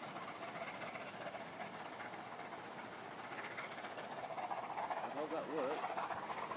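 Distant steam train passing, heard as a faint steady rumble and hiss that grows a little louder in the last couple of seconds.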